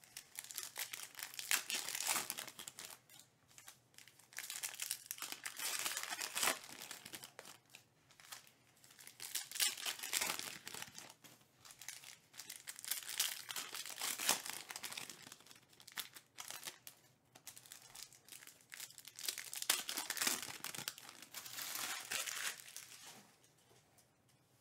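Foil trading-card pack wrappers being torn open and crinkled by hand, a crackly rustling that comes in about five bouts of a few seconds each with short lulls between.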